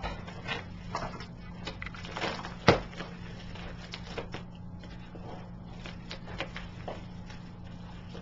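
Padded mailer being handled and opened: scattered soft rustles and small clicks, with one sharper click a little under three seconds in, over a steady low hum.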